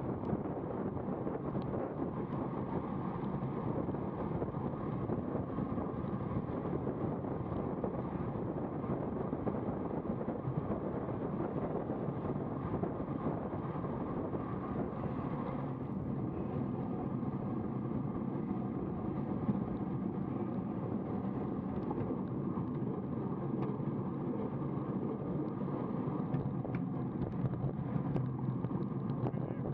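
Steady rush of wind on the microphone of a camera on a road bike riding at about 34 km/h, mixed with road noise.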